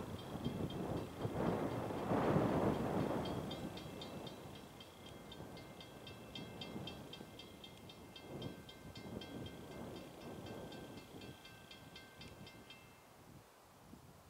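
Long Island Rail Road diesel train running on, its noise fading as it draws away. Over it a railroad crossing bell rings in fast, even strokes, about five a second, and stops near the end.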